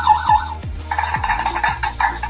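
Clementoni Cyber Robot's small speaker playing programmed sound effects: a warbling electronic 'robotic voice' that ends about half a second in, then a tinny cymbal sound lasting about a second.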